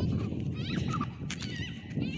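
Wind rumbling on the microphone in the open, with two short high-pitched wavering cries, one about half a second in and another near the end.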